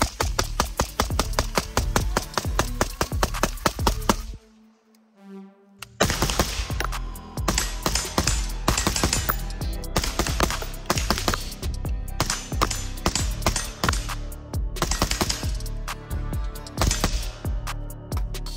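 Rapid semi-automatic fire from a suppressed AR-15 rifle (Stag Arms SPCTRM in .223 Wylde) under a music track with a beat. Both drop to near silence for a moment about four seconds in.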